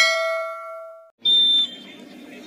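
Notification-bell sound effect from a subscribe-button animation: a bright metallic ding that fades out over about a second. A short loud burst follows as the sound cuts to the outdoor match sound.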